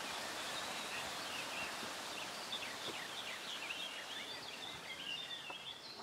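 Woodland ambience: small birds chirping in short, quick calls, more often in the second half, over a steady hiss that eases off slightly near the end.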